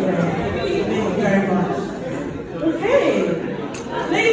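Speech: a woman talking into a microphone through a PA, with other voices chattering. About three seconds in, a voice slides steeply up in pitch.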